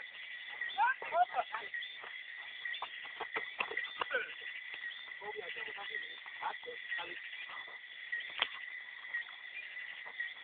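Players' shouts and calls ringing across an outdoor football pitch, with scattered sharp knocks, the loudest about eight and a half seconds in, over a steady high tone.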